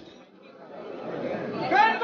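Crowd chatter: many people talking at once in a hallway, with a clear voice close by breaking in near the end.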